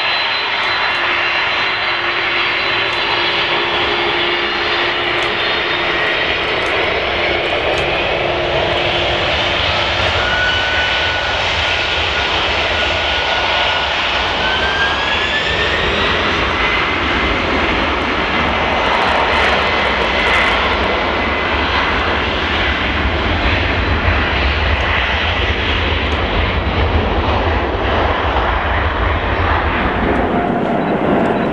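Boeing 767's twin turbofan engines spooling up for takeoff. The whining tones rise in pitch about halfway through, and a deep, loud jet roar builds as the airliner accelerates down the runway.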